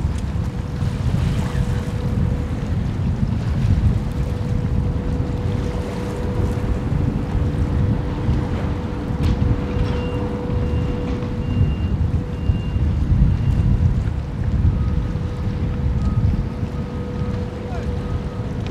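Wind buffeting the microphone in gusts over harbour water, with a steady hum running underneath. Faint high beeps come and go in the second half.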